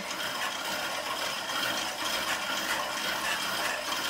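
Spinning bike's flywheel and drive running steadily as it is pedalled, an even mechanical whir.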